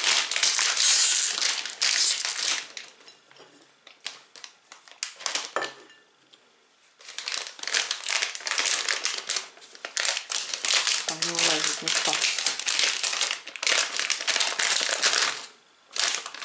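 Plastic snack bag crinkling loudly as hands tear it open and handle it. The crinkling comes in bursts: a long stretch at the start, a quieter pause of a few seconds with small rustles, then more handling as the bag is tipped out over a plate.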